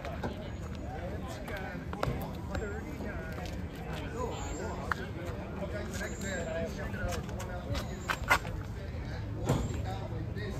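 Background chatter of people talking nearby over a steady low hum, with a couple of sharp clicks near the end.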